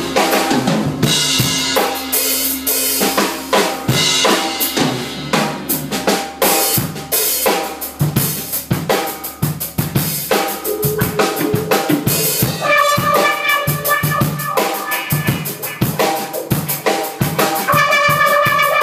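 Live jazz trio: a drum kit plays a busy pattern of snare, rimshot and bass drum hits over electric bass. About two-thirds of the way in a trumpet comes in with held notes.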